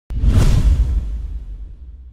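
Logo-reveal whoosh sound effect: it starts suddenly with a click, swells into a loud sweep with a deep low rumble within half a second, then fades away over the next two seconds.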